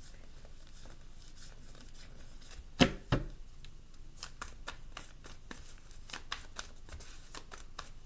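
Tarot deck being shuffled by hand, with the cards making quick, irregular soft clicks as they riffle together. Two sharp knocks close together come about three seconds in.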